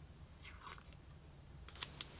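Paper washi tape being handled and pulled from its roll with a faint rustle, then a short crackly rip near the end as a strip is torn off.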